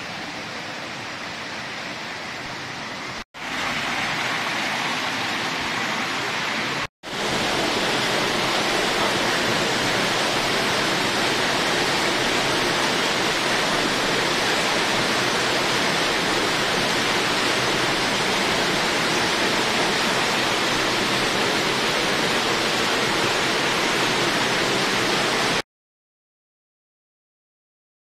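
Steady rush of falling water from a small waterfall inside a cave. Two brief dropouts come about 3 and 7 seconds in, and the water is louder after each.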